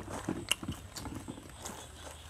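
Scattered light clicks and taps from people eating at a table, with plastic food bags and a plastic bottle being handled.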